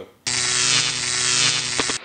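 Intro sting: a loud, distorted electric buzzing drone at one steady pitch. It starts abruptly about a quarter second in and holds, with a few crackling clicks near the end.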